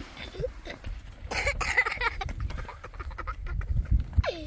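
A series of short, rising animal cries, repeated at irregular intervals, with light handling clicks and rustling around them.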